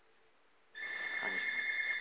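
Landline telephone ringing: a steady, high-pitched electronic ring that starts about three-quarters of a second in.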